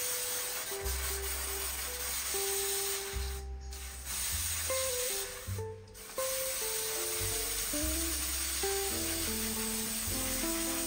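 Aerosol can spraying in long hissing bursts, breaking off briefly twice, over calm background music with held notes and a bass line.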